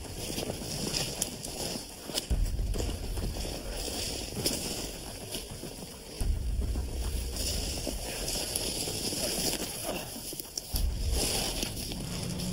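Footsteps through snow and brushing past bare branches and twigs, irregular crackles and rustles. Wind on the microphone comes and goes as a low rumble in long stretches.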